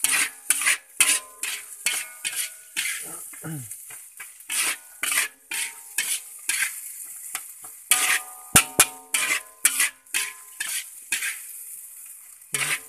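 A metal spatula scraping and clanking against a wok, with scrape-and-clank strokes about twice a second and some ringing metal. It is stirring and pressing frying rice with noodles and egg to work the seasoning through evenly, over a steady sizzle. There is a sharper knock about eight and a half seconds in.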